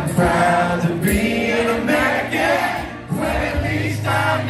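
Live country music: a male singer's voice with an acoustic guitar, played through a concert PA.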